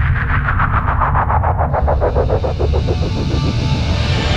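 Channel ident music and effects under an animated logo. A deep, steady low drone runs beneath a rapidly pulsing sweep that slows down over the first few seconds, and a hiss comes in about halfway through.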